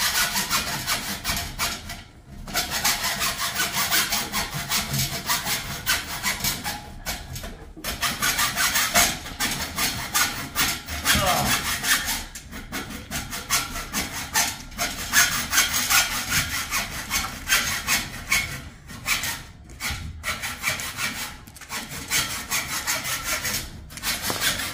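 Hacksaw cutting through a metal bar of a fence panel in steady back-and-forth strokes, pausing briefly a few times.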